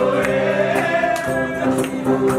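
A group singing along to acoustic guitars, with a steady percussive beat about twice a second.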